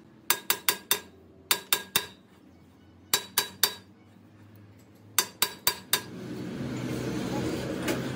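Hammer blows on a steel ring fitted over a truck rear axle shaft held in a lathe, driving it onto the shaft. The blows come in four quick bursts of three or four sharp metallic strikes each, with short pauses between them; a steady noise comes up near the end.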